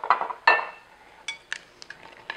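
Glass bottles being handled on a countertop. A sharp glass clink about half a second in rings briefly, followed by a few small ticks and taps.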